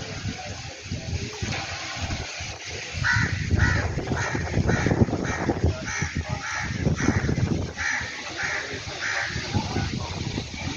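Gusting wind from an arriving dust storm buffeting the microphone in an irregular low rumble. From about three seconds in, a bird calls over and over, roughly two short calls a second.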